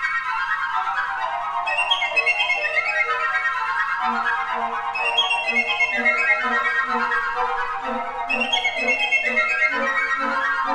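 Flute nonet playing fast repeated figures that pass from part to part in close imitation, sweeping downward in waves about every three seconds. From about four seconds in, the lower flutes add a steady pulsing low note.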